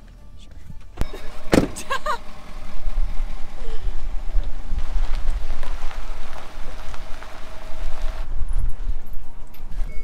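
Ford Super Duty pickup truck: a click and a thump about a second in, then a loud, uneven low rumble as the truck runs.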